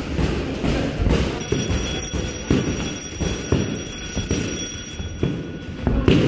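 Boxing gloves hitting focus mitts in a run of punches, about two a second. A steady high electronic tone sounds over them from about a second and a half in and cuts off shortly before the end.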